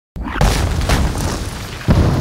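Mortar shells exploding in a battle scene's sound effects: a boom about half a second in, another near one second, and a sharp blast just before the end, over a continuous rumble.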